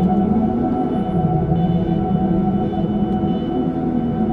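Ambient meditation music for a 639 Hz solfeggio track: layered, sustained drone tones held steady, with a low tone slowly wavering up and down beneath them.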